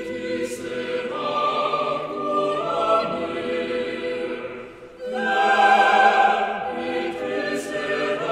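Chamber choir singing slow, sustained chords a cappella. The sound thins out briefly just before five seconds in, then the choir comes back in louder.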